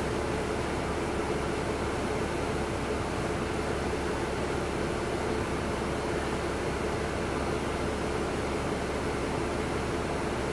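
Steady drone inside the cabin of a NABI 40-SFW transit bus standing at a stop: its Caterpillar C13 diesel idling, blended with the air-conditioning blower.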